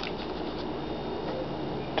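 A small homemade Newman-style pulse motor running steadily, a faint even noise with thin high tones.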